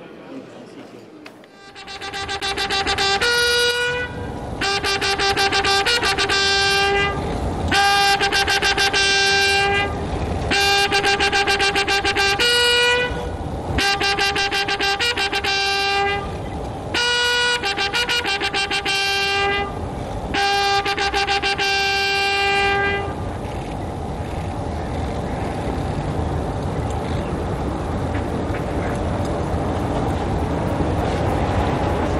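Military bugles sounding a ceremonial salute: a series of long, held brass notes on two pitches, in phrases of about two seconds, which stop about two-thirds of the way through. Open-air background noise follows.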